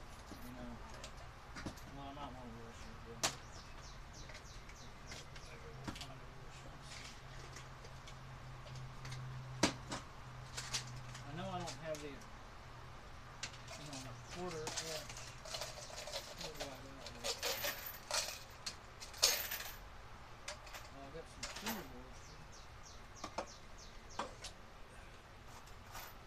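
Small metal hardware being handled on a workbench: scattered light clicks and clinks, with a few sharper single clicks and a busier stretch of ticks in the second half.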